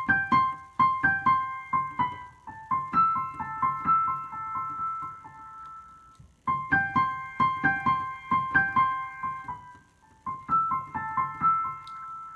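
Digital piano played one-handed: a short melody of single struck notes in the upper-middle range, played three times over with brief pauses about six and ten seconds in.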